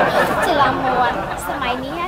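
Speech: several voices talking over one another in a dense chatter, thinning out to a single voice near the end.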